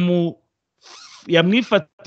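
A person speaking in short phrases, with a brief hissy intake of breath between them about a second in.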